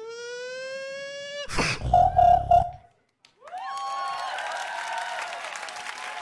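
Beatboxing into a handheld microphone. A long held tone glides up and then holds, followed by a deep bass hit with a buzzing note. After a brief break, another tone rises and is held as the routine closes.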